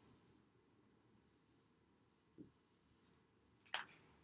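Dry-erase marker writing faintly on a whiteboard, with a short sharp click near the end.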